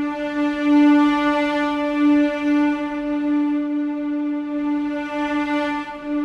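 A single held note from a sampled instrument in the Kontakt sampler, steady in pitch. Its tone grows brighter and duller as the mod-wheel (MIDI CC1) knob is turned, the control that usually drives an orchestral library's dynamics.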